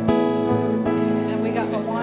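Acoustic guitar strumming slow chords that ring on, with a couple of fresh strums near the start.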